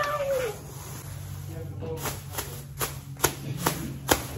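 A large clear plastic bag crinkling and snapping as it is shaken and handled, with a run of sharp crackles in the second half. A short, falling, squeal-like voice sounds at the very start.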